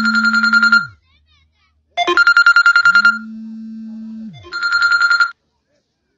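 Electronic ringing tone: three short bursts of a fast-trilling high tone, with a steady low hum under the first burst and another between the second and third.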